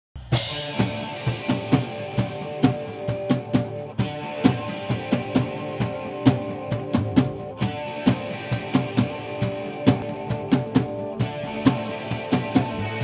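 Live rock band playing an instrumental intro: a drum kit beat of bass drum and snare under sustained chords from electric guitars and keyboard, opening with a cymbal crash.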